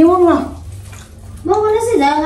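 A woman's voice: one drawn-out syllable, a pause of about a second, then speech again near the end.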